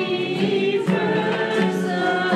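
Several voices singing a church song, accompanied by two strummed acoustic guitars.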